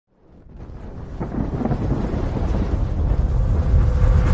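Cinematic intro sound effect: a deep, thunder-like rumble that rises from silence and swells steadily louder, with a faint steady tone joining near the end.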